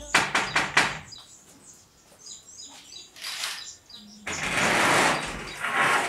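A few sharp knocks on a glass-paned door, with birds chirping. About four seconds in comes a loud, drawn-out scraping noise as the door is opened.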